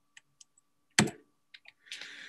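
A single sharp computer-keyboard click about halfway through, with a few faint ticks around it, as the presentation slide is advanced.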